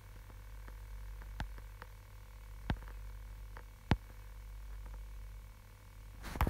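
Low, steady hum of room tone broken by a few soft, scattered clicks. Three sharper clicks stand out, about one and a half, two and three-quarter and four seconds in.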